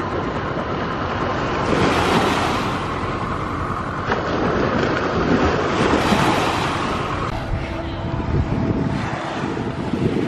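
Small sea waves washing up onto a sandy shore, swelling about two seconds in and again around six seconds in, with wind buffeting the microphone.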